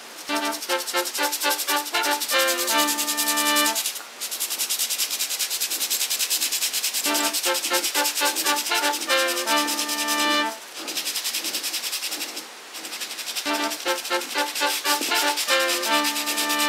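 Toothbrush bristles scrubbing quickly back and forth along a wet, foamy grout line between floor tiles, a steady fast rub. Background music plays over it, a short melodic phrase that comes three times.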